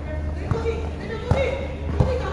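Basketball dribbled on a court of plastic interlocking tiles: two bounces under a second apart, the second louder, over players' voices.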